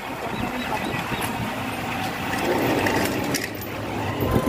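Steady engine and road noise from a motorbike riding through light city traffic.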